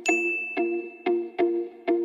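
A single bright ding right at the start, ringing on for about a second and a half: a subscribe-button notification chime, over background music with a steady beat.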